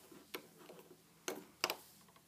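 A few light, sharp clicks from a metal hook and rubber bands working on a plastic rainbow loom's pegs, two of them close together in the second half.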